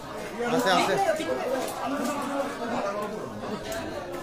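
Several people talking at once, indistinct chatter of voices in a small room.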